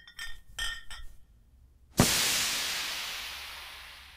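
Intro sound effects: a few quick, bright ringing clinks in the first second, then about two seconds in a sudden loud crash that fades out over the next two seconds.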